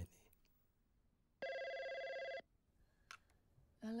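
A telephone ringing once: a single steady electronic ring about a second long. A brief click follows, then a man answers 'Hello.'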